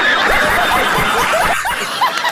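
A group of people laughing loudly together, many voices at once, with a man's drawn-out "oh" among the laughter.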